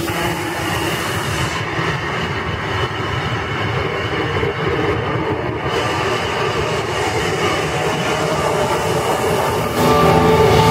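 Amplified guitar noise from the stage amps: a loud, rumbling, beatless wash of feedback and effects with no clear notes, between passages of the band's heavy playing. The upper end dulls for a few seconds in the first half, as if filtered through an effect, then opens up again.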